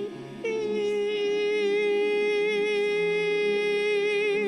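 A long sung note held for about three and a half seconds, wavering with vibrato near the end, over quieter low sustained accompaniment.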